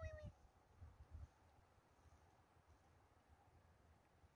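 Near silence: the tail of a man's call fades away at the very start, then only faint low background noise.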